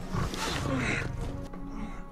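A cartoon reindeer's low, rough grunt from a film soundtrack, over orchestral film score music.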